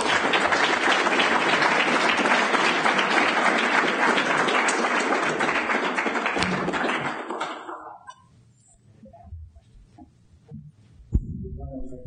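Audience applauding for about eight seconds, the clapping fading away, followed by a single thump near the end.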